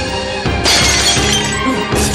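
Drinking glasses shattering: a sudden crash about two-thirds of a second in, with pieces tinkling as it dies away, then a second crash starting near the end, over background music.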